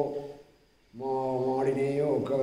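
An elderly man's voice intoning in a drawn-out, chant-like way on long held pitches, breaking off for about half a second near the middle before going on.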